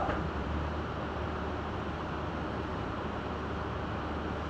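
Steady room background noise: an even hiss with a low hum underneath, unchanging throughout.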